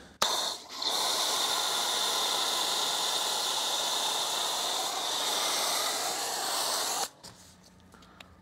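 Foam sprayer spraying wheel foam over a car wheel: a steady hiss that runs for about seven seconds, with a brief dip near the start, then cuts off abruptly.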